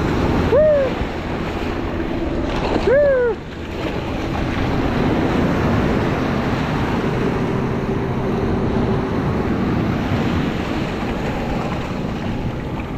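Ocean surf breaking and washing up the beach, with wind on the microphone. Two short calls that rise and fall in pitch stand out, about half a second in and again about three seconds in.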